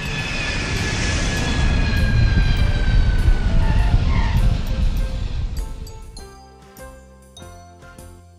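Airplane fly-by sound effect: a rumbling engine noise swells, peaks and fades away over about six seconds, with a whine that slowly falls in pitch as it passes. Light background music with chiming notes plays beneath.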